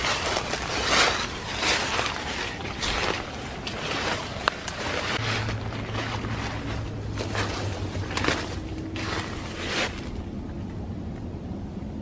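Footsteps crunching through dry fallen leaves at a steady walking pace, fading toward the end. A low steady hum runs underneath from about five seconds in to about ten.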